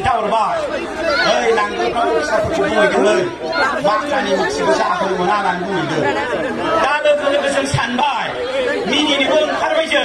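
Only speech: a man giving a speech in Bodo into a podium microphone, talking without a break.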